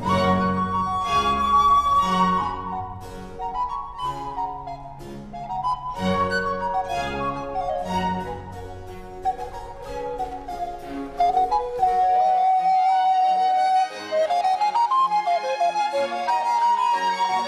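Baroque music played on period instruments: two recorders carry the melody over bowed strings. About twelve seconds in the bass drops away, and the high recorder line goes on alone, climbing in a quick rising run near the end.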